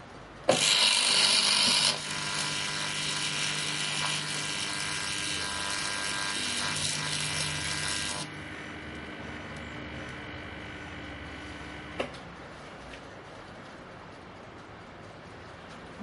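Microwave-oven transformers switched onto a bared CFL lamp's electronics at about 2 kV: a sudden loud buzz with crackling arcing as the circuit burns, loudest for the first second and a half. It stays strong until about eight seconds in, drops to a quieter transformer hum, and ends with a sharp click about twelve seconds in.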